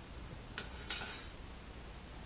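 Two light metallic clicks about a third of a second apart, a little over half a second in, as the anodised aluminium tea kettle and the thermometer probe through its lid are handled, with a brief ring after them.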